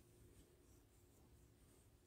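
Near silence, with a few faint scratchy rubs of yarn being pulled over a crochet hook and through the stitches.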